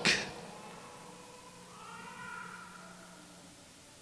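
A pause in a man's speech in a large, echoing church: his voice rings on briefly and fades. About a second and a half in comes a faint, drawn-out, slightly rising high-pitched whine lasting about two seconds.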